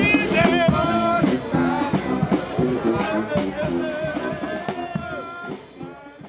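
New Orleans-style brass band playing, with horn lines over a steady drum and sousaphone beat, fading down near the end.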